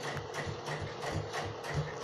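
A machine running with a steady rhythmic clatter, about six or seven beats a second, over a low hum.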